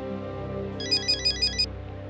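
Mobile phone ringtone: a rapid electronic trill, about five or six pulses a second, sounding for about a second starting roughly three quarters of a second in. It signals an incoming call, which is answered straight after.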